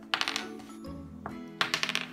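A small plastic die rolled onto the game board, clattering in two short bursts of rapid clicks about a second and a half apart, over steady background music.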